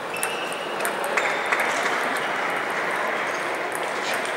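Table tennis balls clicking off tables and bats at scattered moments, from several matches in a busy sports hall, over a steady din of hall noise.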